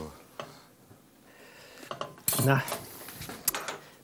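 Metal utensils clinking against china plates as pasta is served: a few separate sharp clinks.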